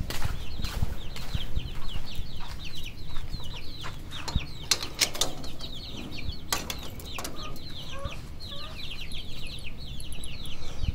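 Caged birds chirping, a quick run of short, high, falling chirps repeated several times a second, with a few lower chicken clucks near the end. Scattered clicks and knocks come from a wire-mesh cage door being handled.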